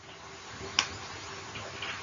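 A single sharp click a little under a second in, over a faint steady hiss.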